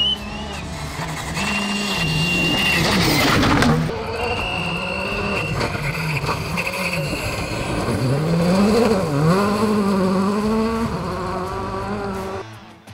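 Škoda Fabia rally car's turbocharged four-cylinder engine revving hard and changing gear as it passes on a loose gravel stage, the pitch rising and falling several times. A loud rush comes about three seconds in.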